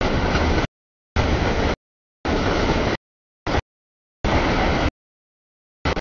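Mixed freight train's cars rolling past at a grade crossing, a steady rumble of wheels on rail. The sound is cut into short bursts, about one a second, by repeated dropouts to complete silence.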